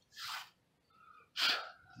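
A man's breaths between sentences: a short, soft intake near the start, then a sharper, louder breath about one and a half seconds in.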